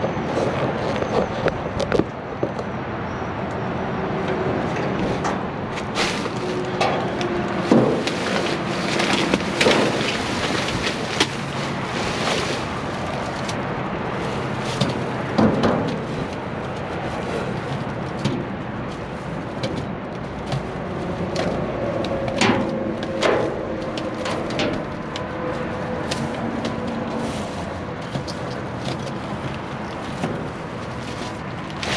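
Plastic trash bags rustling and crinkling as they are moved about, with scattered sharp crackles and knocks, over a steady background hum.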